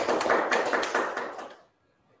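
Audience applauding, a dense patter of handclaps that dies away about one and a half seconds in.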